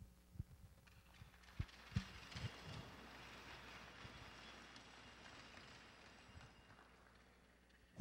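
Faint applause from an arena crowd, building after about a second and dying away towards the end, with a few low thumps in the first three seconds.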